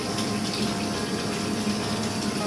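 Bath tap running, a steady stream of water pouring into a partly filled bathtub.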